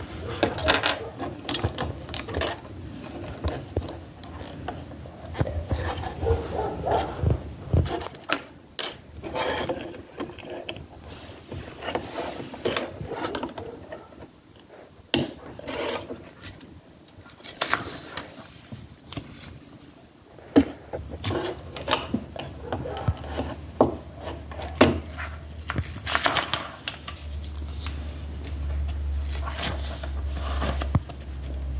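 Plastic LEGO bricks being handled and pressed together on a tabletop: irregular clicks and light rattles, with rubbing and shuffling of loose pieces. A low hum comes in near the end.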